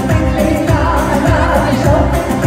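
Live amplified Assyrian dance music: a woman singing into a microphone over electronic keyboard and a heavy, driving beat.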